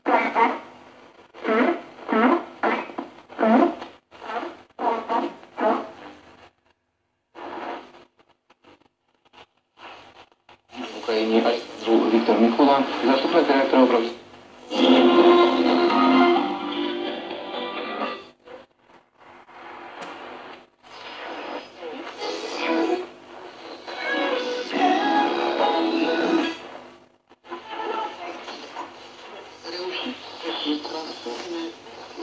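Short-wave reception from the loudspeaker of a restored 1948–49 Ducati RR2050 valve radio as it is tuned across the band. For the first few seconds a clipped, evenly paced single-sideband voice, which the restorer takes for a number station; then a near-silent gap of a few seconds, then music and speech from other stations, with short drop-outs as the dial moves.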